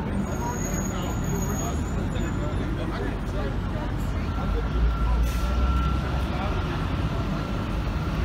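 Busy city street: a heavy vehicle's engine rumbling, louder from about halfway through with a thin steady whine over it, under the chatter of passing pedestrians.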